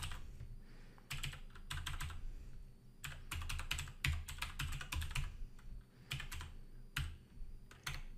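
Typing on a computer keyboard: quick runs of keystrokes in several short bursts with brief pauses between them.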